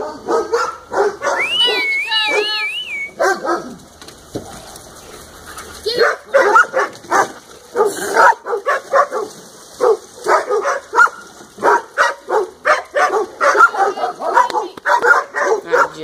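Several dogs barking in quick, overlapping bursts. A high, wavering whine comes about two seconds in, and the barking drops off briefly around four seconds before picking up again, dense to the end.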